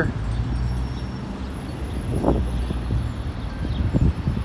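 Low, steady engine hum of a motor vehicle in street traffic close by, with a short faint sound about two seconds in.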